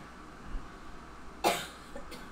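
A man coughs once, sharply and briefly, about one and a half seconds in, over quiet room tone.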